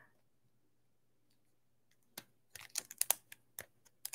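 Typing on a computer keyboard: a run of irregular, fairly quiet keystrokes starting about two seconds in.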